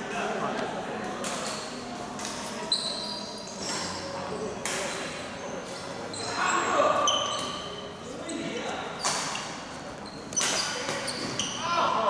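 Badminton doubles rally: a series of sharp racket hits on the shuttlecock and short high squeaks of shoes on the court floor, with voices in the background.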